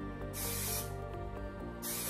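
Aerosol hairspray can sprayed in two short bursts onto lifted curls: a hiss lasting about half a second near the start, then another beginning just before the end, over soft background music.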